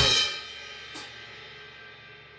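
Final crash cymbal and drum hit of a drum kit ringing out and fading away as the song ends, with a light tick about a second in.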